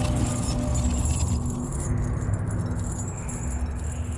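Logo-intro sound effects: the low tail of an impact boom slowly fading, with a light metallic chain jangling over it.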